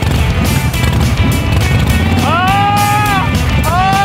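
Music with a heavy low end, with two long held vocal notes in the second half, each gliding up, holding, then dropping away.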